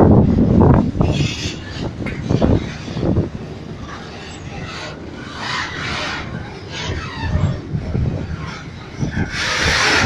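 Freight train flatcars rolling past at close range, their steel wheels clattering rhythmically over the rail joints for the first few seconds, then settling into a quieter steady rumble. A louder rushing noise rises near the end.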